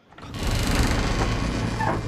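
A steady low rumble with a broad hiss over it, rising quickly about a third of a second in and then holding, with a brief higher creak-like tone near the end.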